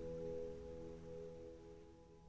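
Soft background music: a held, ringing chord slowly fading away.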